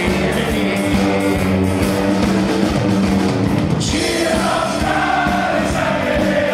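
Live rock band with drums, guitars and singing. About four seconds in, a cymbal crash rings out and the steady beat gives way to long held notes sung by many voices.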